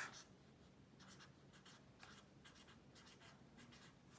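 Faint scratching of a pen writing on lined notebook paper, in a string of short strokes.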